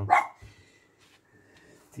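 A dog gives one short bark right at the start, followed by a faint, steady high tone until speech resumes near the end.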